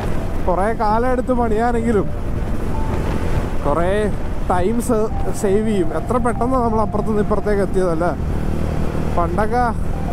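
A man's voice speaking in several stretches over the steady low rumble of a TVS Ronin's single-cylinder engine and wind noise, cruising at highway speed.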